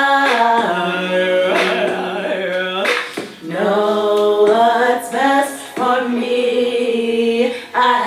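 A woman singing unaccompanied in a small bathroom, holding long notes and sliding between pitches, with short breaks between phrases.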